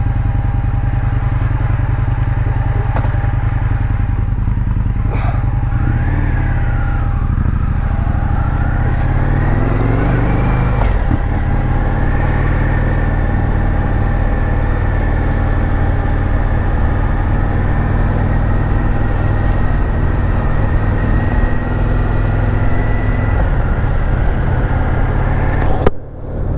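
Indian FTR1200's V-twin engine idling with its radiator cooling fan running, then pulling away. The engine note rises from about six to eleven seconds in, then settles to a steady cruise.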